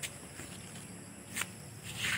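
Faint outdoor ambience with a steady high-pitched insect drone, and a single short scuff of a footstep about one and a half seconds in.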